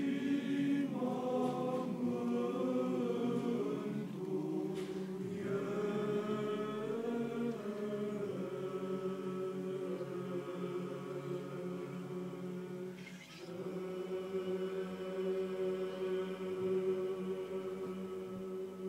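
Men's choir of Orthodox priests singing a cappella, holding long sustained chords, with brief breaks about five and thirteen seconds in.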